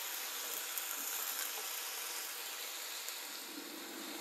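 Chicken breast frying at high heat in a small pan: a quiet, steady sizzle.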